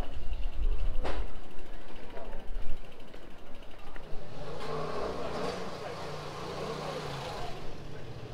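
Bicycle riding over a stone-paved street, heard on its action camera as a low rumble with wind buffeting the microphone, and a sharp knock about a second in. From about halfway, people's voices are heard in the street.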